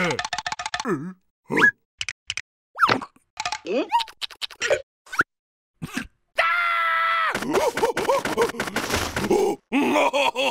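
Cartoon caterpillar's wordless vocal noises: short grunts, groans and squeaky gliding sounds broken by gaps and quick comic sound-effect clicks, with a brief held musical note a little past the middle. Near the end come rapid wobbling gobbling noises as he licks at food on the ground.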